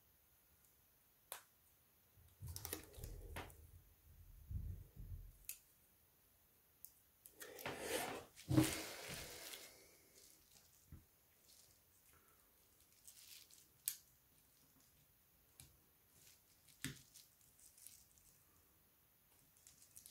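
Hands handling a Samsung Galaxy A-series smartphone and its parts: scattered faint clicks and taps, low bumps a few seconds in, and a longer rustling scrape about eight seconds in.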